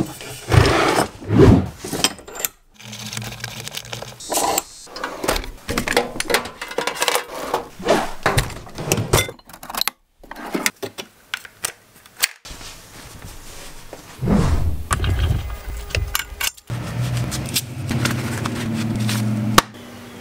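Workshop tools and hardware being handled: a run of short clatters, clicks, knocks and metal scrapes. A steady low hum comes in during the last few seconds.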